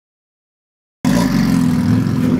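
Silence, then about halfway through a car engine starts sounding abruptly and loudly, running at a steady pitch.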